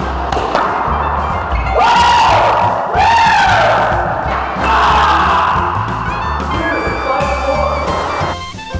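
A man yelling loudly in celebration, three long shouts each rising and then falling in pitch, at about two, three and five seconds in, over background music.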